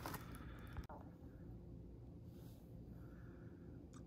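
Faint rustling with a soft click just under a second in, then quiet room tone.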